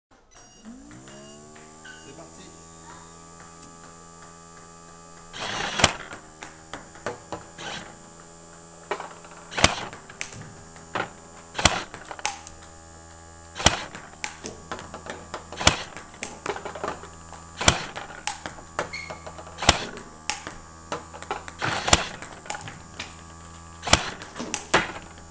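Table tennis robot's motor humming, rising in pitch over the first second or two and then running steady. From about five seconds in, ping-pong balls click in a regular rally: the loudest clicks come about every two seconds, with lighter bounces on the table and paddle hits in between.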